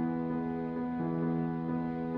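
Slow, gentle background music of held notes that change about every half second to a second.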